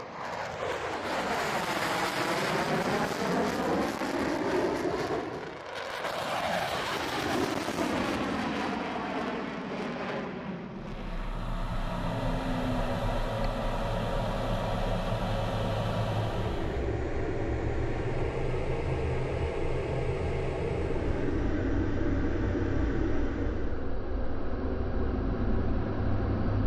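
Twin-engine F-15 fighter jet flying past, its engine noise sweeping in pitch as it passes, twice in the first ten seconds. From about eleven seconds in, a steady low engine drone as heard inside the cockpit.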